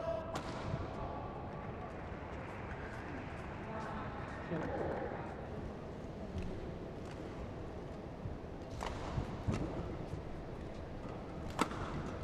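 Indoor badminton hall between points: a steady low murmur of crowd and hall noise with scattered voices. Near the end come a few sharp cracks of rackets hitting the shuttlecock.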